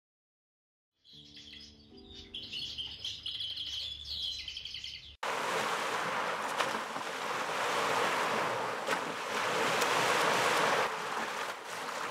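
Silence for about a second, then birds chirping among trees for about four seconds over a low steady hum. It cuts off abruptly into a steady wash of lake waves and wind along a shore.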